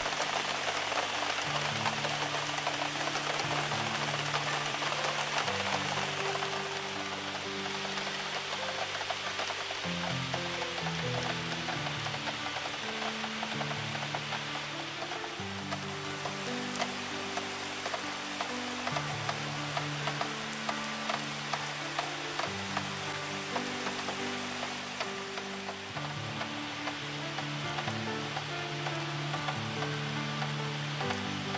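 Steady rain falling, heard as an even hiss with fine pattering, under slow background music of sustained low chords that change every couple of seconds.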